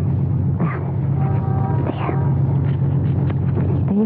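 Car engine idling steadily, a radio-drama sound effect, with a short murmured voice about a second in.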